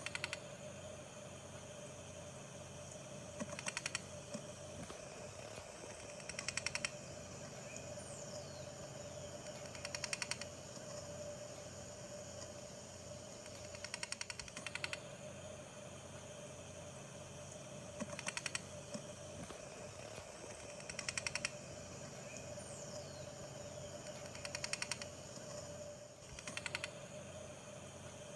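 Faint ambient soundtrack: a steady hum with short bursts of rapid, rattling clicks every three to four seconds and a faint falling whistle twice, repeating as a loop about every fifteen seconds.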